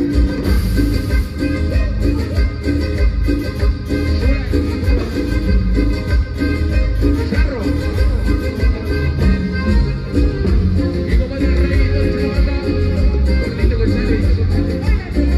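A cumbia band playing live, amplified, with a steady, heavy bass beat.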